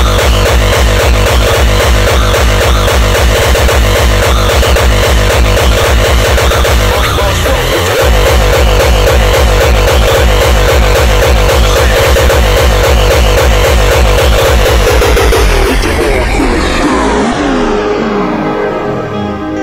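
Loud uptempo hardcore electronic music with a fast kick drum driving steadily. Near the end the high end sweeps down and the track dulls and eases off as it blends into the next one.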